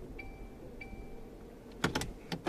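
Two short electronic beeps about half a second apart over a low steady hum inside a car cabin, then two sharp clicks near the end.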